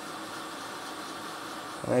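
Hot air rework station running at 380 °C, its blower giving a steady airy hiss. A voice begins just before the end.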